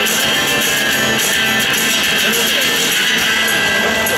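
Live rock band playing through a stadium PA, led by guitar, at a steady loud level.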